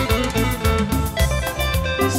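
Live band playing an instrumental passage of Latin dance music: a guitar line over bass and drums, with a steady beat and no singing.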